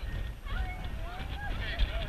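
Indistinct shouts and chatter from several people at once, with wind rumbling on the microphone.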